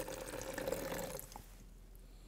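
Water poured from a metal utensil into a plastic jug, the stream splashing for about a second before it stops.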